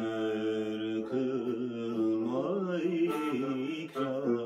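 A man singing long, ornamented held notes in classical Turkish style, in makam Acem, accompanied by a plucked tanbur.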